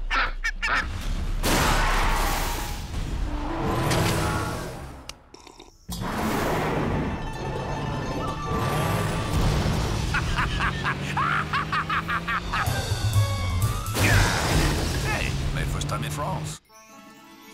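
Cartoon soundtrack: music over a racing car engine running at speed, with action sound effects. The sound dips away just before six seconds in and comes back suddenly and loud.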